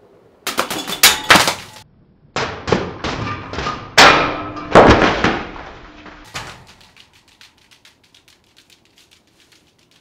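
Spinning, razor-sharpened ceiling fan blades chopping repeatedly into a large watermelon: a rapid run of sharp chops and splatters in two bursts, the first short and the second lasting about four seconds. Scattered light ticks follow and die away.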